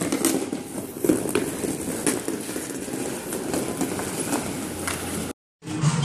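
Indoor rink hockey game: scattered sharp clacks of sticks and puck or ball on the plastic tile floor and boards over a steady hall background. The sound cuts off abruptly near the end.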